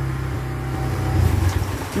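Motorcycle engine idling with a steady low hum, swelling slightly just after a second in and then stopping about a second and a half in.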